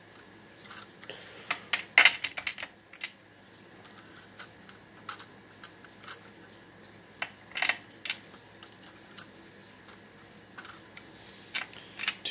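A hand priming tool and small brass cases clicking and clinking as primers are seated into .22 Hornet cases one after another: a scattered series of short, sharp clicks, loudest about two seconds in and again just before eight seconds.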